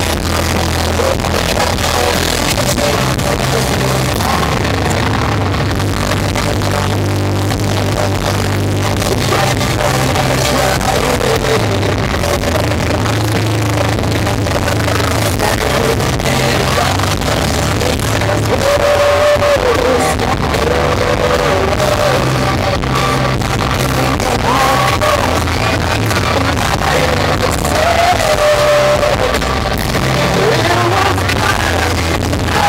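Live rock band playing loud through a club PA: electric guitars, bass and drums with a sung lead vocal over them, the voice clearest in the second half. Recorded from within the crowd on a small camera.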